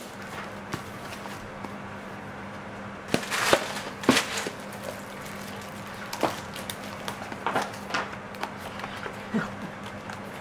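Plastic shrink-wrap being peeled off a phone's cardboard box and the lid slid off, with rustling scrapes about three to four seconds in, then light taps and knocks of cardboard as the inner tray is handled. A faint steady hum runs underneath.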